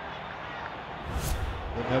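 Quiet, steady ambience of a football match broadcast, broken a little over a second in by a short whoosh with a low rumble, the transition effect of a highlights edit; commentary begins right at the end.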